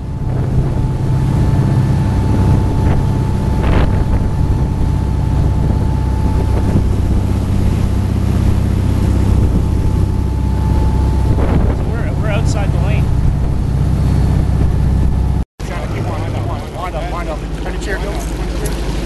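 Sportfishing boat running fast: a steady engine drone with the rush of its wake and wind buffeting the microphone. The sound cuts out briefly near the end, then the engine runs on lower.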